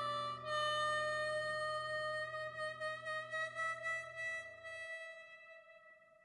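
Harmonica holding one long final note that wavers in loudness about four times a second and slowly fades out, the end of a song. Under it a sustained low keyboard chord rings and stops between four and five seconds in.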